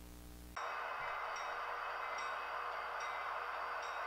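HO-scale model diesel locomotives running along the layout track, a steady mechanical hum that cuts in abruptly about half a second in and holds evenly.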